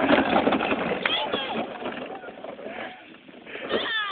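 A child's plastic wagon rattling over a bumpy dirt slope as it rolls away, its clatter fading, with excited voices calling out and a louder shout near the end.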